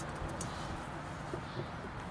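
Low steady background hum, with faint rustling of hands spreading peat moss in a glass terrarium bowl.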